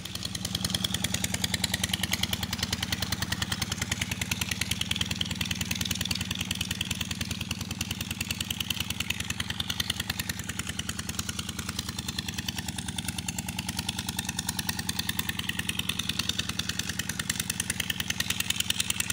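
16 hp diesel engine running steadily, its exhaust beating in a fast, even rhythm.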